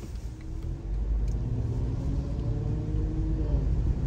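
Car engine and road rumble heard from inside the cabin as the car pulls away from a stop and speeds up, growing louder about a second in.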